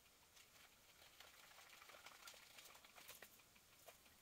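Near silence, with faint scattered snips of scissors cutting paper.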